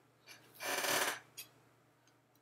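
A man's single breath, about half a second long, taken between phrases, followed by a faint mouth click.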